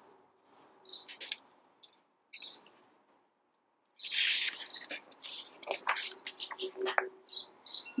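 Small birds chirping in short, high calls: a few near the start, then many in quick succession through the second half.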